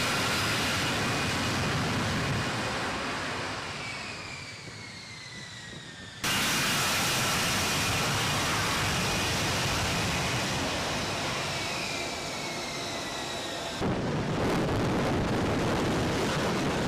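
F-35B jet with its F135 engine running in hover and vertical landing. The sound is loud, with a high whine that slides down in pitch. It fades somewhat, then cuts abruptly to a fresh loud passage about six seconds in and again near the end.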